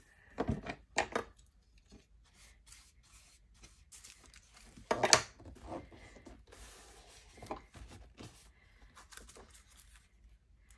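Hands rubbing and pressing thin printed background paper down onto a journal page wet with collage medium: soft paper rustles with a few short crinkles, the loudest about five seconds in.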